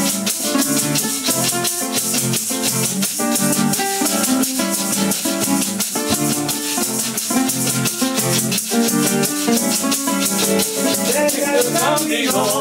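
Instrumental passage of Colombian llanero music: acoustic guitars strumming chords over maracas shaking a fast, steady rhythm.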